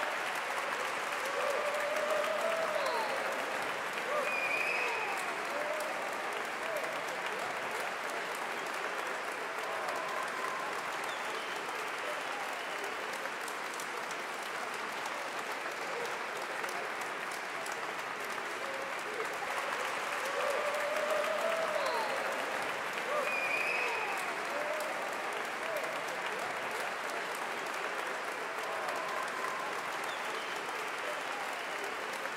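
Large audience applauding steadily, with a few voices calling out over the clapping.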